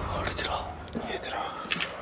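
Quiet, hushed whispering voices with a few faint clicks.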